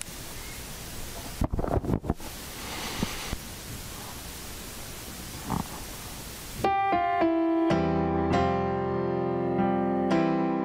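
Electronic keyboard playing slow sustained chords as the introduction to a worship song, starting about two-thirds of the way in. Before it there is a steady hiss with a few low thumps.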